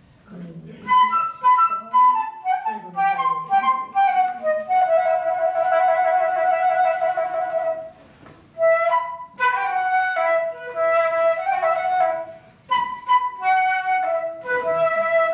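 A small flute played solo, a slow melody: short notes stepping downward, then a long held note in the middle, and after a brief break more short phrases.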